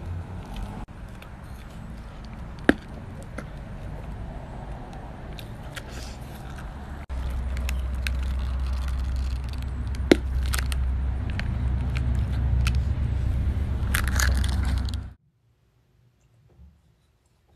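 Jelly fruit candies, jelly sealed in a thin plastic casing, being bitten and chewed close to the microphone: sharp cracks of the casing about three seconds in and again about ten seconds in, and a run of crackling near the end. Under them is a low rumble that grows louder about seven seconds in. The sound cuts off suddenly just before the end.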